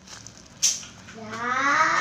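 A short, sharp crackle about two-thirds of a second in, then a drawn-out, rising, meow-like call from about halfway through.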